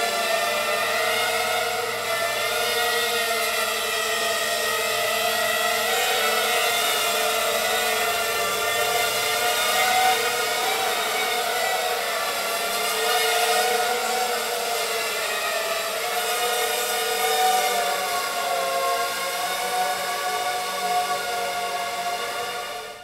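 Racing quadcopter's four Emax MT2204 2300KV brushless motors spinning Gemfan 5x3 three-blade props in flight: a continuous layered whine whose pitch rises and falls with the throttle.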